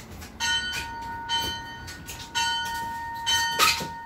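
A metal bell struck twice, about two seconds apart, each stroke left ringing with several clear tones. A sharp knock near the end.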